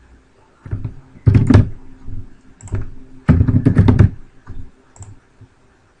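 Computer keyboard typing in short bursts of quick keystrokes. The loudest runs come about a second in and just past three seconds in.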